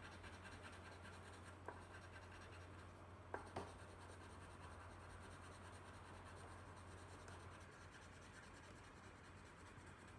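Colored pencil shading on paper, a faint steady scratching, with a few light clicks about two and three and a half seconds in.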